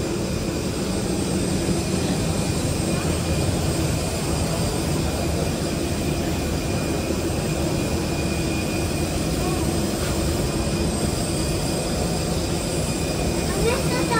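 Steady hum and rush of a parked airliner's ventilation and power systems at the cabin door, with faint steady tones in it. A child's voice comes in near the end.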